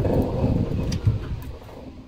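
Golf cart riding along a paved road: a steady low rumble of its running gear and tyres, fading away toward the end.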